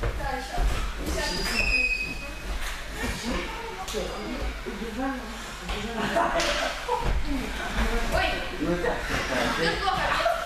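Indistinct voices of children talking and calling in a large gym hall, with a few short knocks and a brief high squeak about two seconds in.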